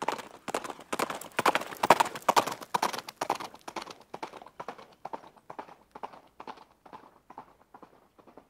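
Horse hooves clip-clopping in a steady trotting rhythm, about three or four strokes a second, loudest in the first half and then fading away.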